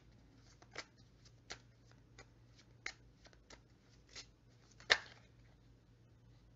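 Tarot cards being handled and shuffled: irregular soft snaps and rustles, the loudest one about five seconds in.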